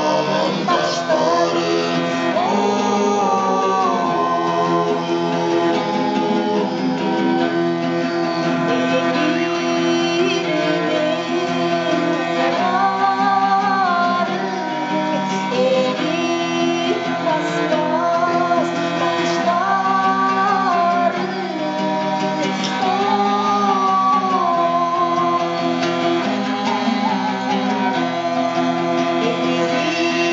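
Live Altai folk music: a two-string topshuur lute is strummed under singing whose melody rises and falls over a steady low drone.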